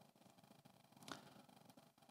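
Near silence: faint room tone with one brief, faint click about a second in.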